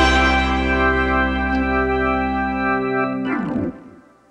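Background music ending on a long held chord, which cuts off with a short falling sweep shortly before the end.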